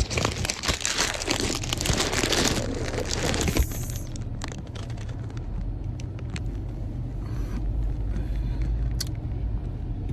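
Close rustling and crinkling for the first three and a half seconds, then the steady low rumble of a car cabin as the car pulls away.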